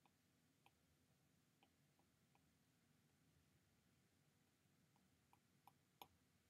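Near silence, with a handful of faint, scattered clicks from a stylus tip tapping a tablet's glass screen as strokes are drawn.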